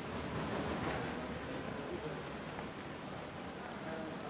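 Department store ambience: a steady wash of noise with faint, indistinct voices in the background.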